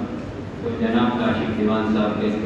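Speech only: a man speaking into a microphone.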